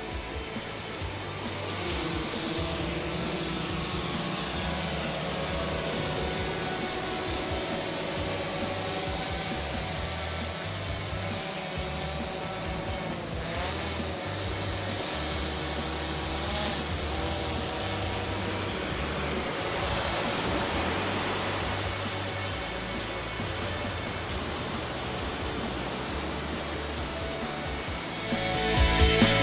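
Background music mixed with the steady whine of a multirotor fishing drone's propellers; the whine's pitch wavers briefly about halfway through.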